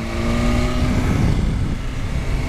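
BMW S1000RR's inline-four engine running at steady revs, with wind noise on the microphone. About a second in, the engine note falls as the revs drop.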